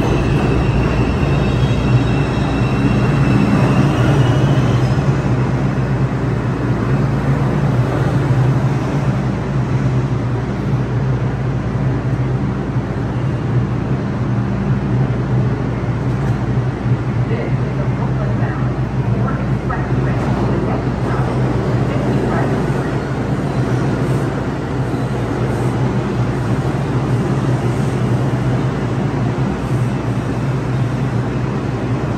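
An R142-series New York subway train on the 4 line braking to a stop at a station platform, with a high brake and wheel squeal over the first few seconds. It then stands at the platform with a steady low hum and rumble from the train's equipment.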